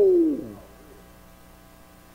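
A man's drawn-out "whoa", falling in pitch and trailing off within the first half second, then quiet room tone with a faint steady hum.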